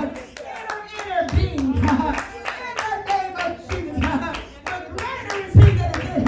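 Hand clapping in a steady praise rhythm, about four claps a second, under a woman's voice carried through a microphone and PA. A heavy low thump comes near the end.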